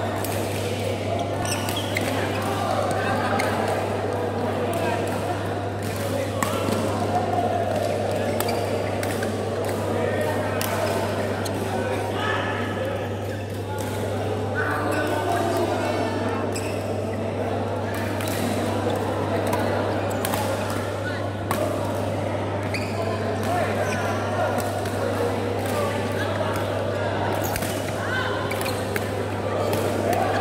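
Badminton rackets striking a shuttlecock during rallies, sharp clicks at irregular intervals, over a chatter of voices and a steady low hum in a large hall.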